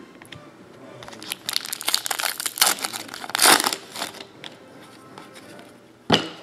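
Foil trading-card pack wrapper crinkling and tearing as it is ripped open by hand, a dense crackle from about a second and a half in to about four seconds, loudest near the end of that run.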